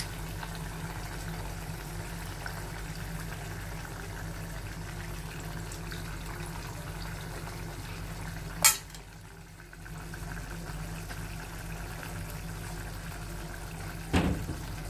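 A pot of dry-fish curry simmering on a gas burner, heard as a steady low hum with faint noise. It is broken by one sharp knock a little past halfway, like metal striking metal, followed by a brief dip.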